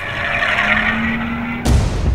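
BMW M235i's turbocharged 3-litre inline-six running under load as the car corners on the track, heard as a faint steady, slightly rising hum under a loud hiss of tyre noise. A sudden deep rumble comes in near the end.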